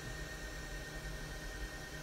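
Quiet steady background hiss with a low hum and a faint thin high tone, with no distinct event: room tone in a pause between speech.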